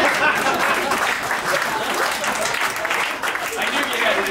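Audience applauding in a small theatre, dense and steady clapping, with voices mixed in.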